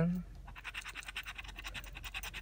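The edge of a metal key scraping the coating off a paper scratch-off lottery ticket in quick, repeated strokes, starting about half a second in.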